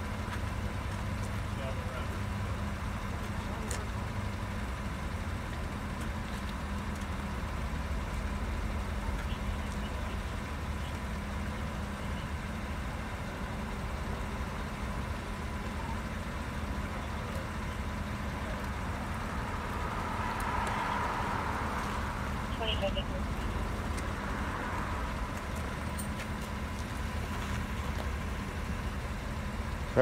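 Police SUV engine idling with a steady low rumble, with faint, indistinct voices about two-thirds of the way through.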